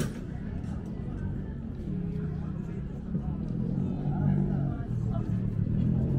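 Busy pedestrian street ambience: passersby talking, with a vehicle engine running close by that grows louder through the second half.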